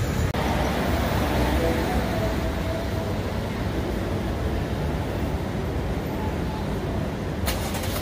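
Steady rumble of city street traffic, with a faint whining vehicle tone in the first few seconds and a short burst of noise near the end.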